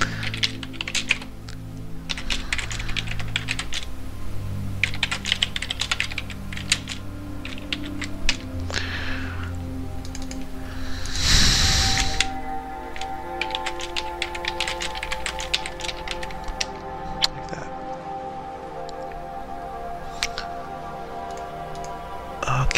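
Computer keyboard typing in irregular runs of quick keystrokes, over soft background music with long held chords. About eleven seconds in there is a brief, louder rush of noise.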